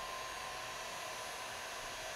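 Handheld electric heat gun running steadily, an even blowing hiss with a faint whine.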